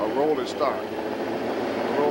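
A vehicle engine running steadily, a low even hum, with people's voices over it in the first second.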